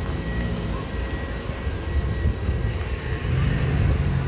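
SUVs rolling slowly past at close range, a low engine and tyre rumble that grows louder near the end as a second vehicle comes close.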